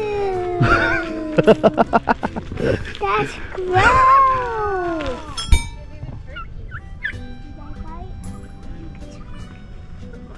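A turkey gobbling: a quick rattling call about a second and a half in.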